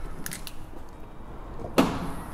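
A Porsche 992 Carrera's front luggage compartment lid being released and opened: a couple of faint clicks, then one sharp clunk near the end.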